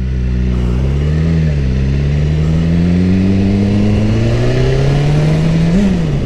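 BMW S 1000 RR inline-four engine pulling away on light throttle, its pitch climbing steadily. Two upshifts break the climb: a short rise and dip about a second and a half in, and another right at the end.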